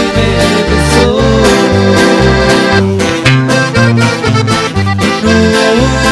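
Live regional Mexican band playing an instrumental passage with no singing: button accordion carrying the melody over acoustic guitar and a bass line that changes note in steady rhythm.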